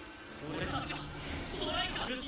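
Speech: a character's dialogue from the anime, with no other distinct sound.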